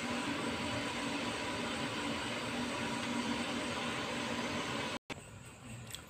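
Steady rushing hiss of a steamer pot of water at a full boil on a gas stove, which cuts off suddenly about five seconds in, leaving a much fainter hiss.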